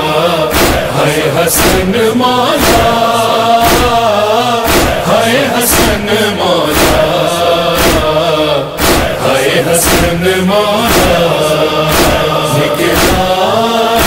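Male voices chanting a noha, a lead reciter with a backing chorus, held and wailing lines with no clear words, over a steady beat of about one stroke a second.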